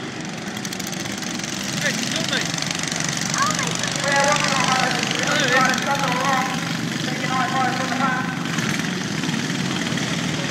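Small engines of ride-on racing lawn mowers running steadily as several mowers pass, with people's voices over them.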